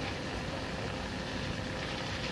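Steady background noise of an old recording between words: an even hiss with a low rumble and a faint steady hum.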